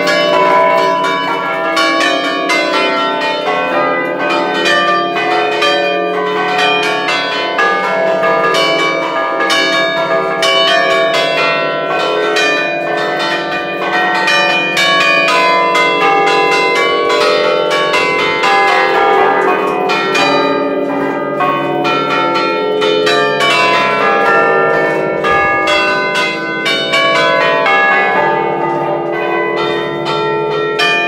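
Church bells of an eight-bell ring tuned in D, rung close up in the belfry in festive style: a loud, unbroken run of rapid strikes from several bronze bells, their tones ringing on and overlapping.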